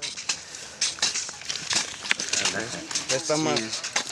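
Crackling snaps of ripe agave piña flesh and fibres being torn off by hand, with a voice speaking briefly about three seconds in.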